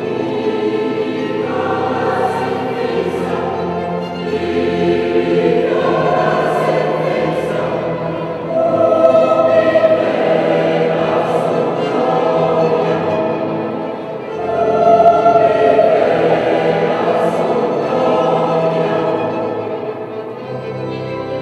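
Mixed choir singing sustained chords with string accompaniment, swelling louder twice, about halfway through and again near three quarters of the way.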